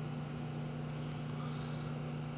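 Steady low hum of room tone.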